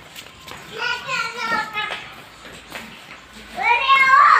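A small child's high-pitched voice calling out twice without clear words: once about a second in, and again near the end in a rising call.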